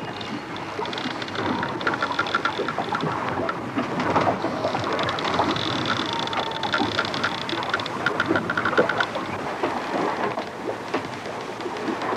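Dense, rain-like rush of water noise, thick with small crackles and patters, with faint short high pips repeating through the middle.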